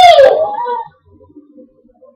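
A young child's long, high-pitched whine that falls away and stops about a second in, a protest at being refused mascara.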